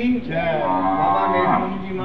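A zebu cow mooing: one long, drawn-out call.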